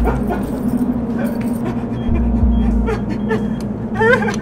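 Dark, drone-like film score: a steady held low tone with heavy low pulses swelling in about halfway through. Short wavering, yelping cries cut across it, the loudest right at the end.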